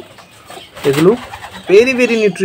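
Racing pigeons cooing, a short coo about a second in.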